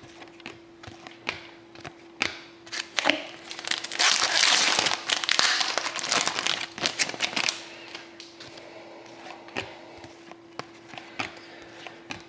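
Hockey trading cards handled and flipped one by one, with light clicks and scrapes throughout. From about four to seven and a half seconds in comes a louder stretch of crinkling from the card pack's wrapper.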